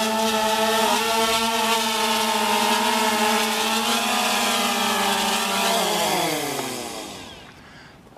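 DJI Phantom Vision 2 Plus quadcopter's four propellers humming steadily as it hovers low and sets down, then winding down in pitch and stopping about six to seven seconds in as the motors shut off after landing.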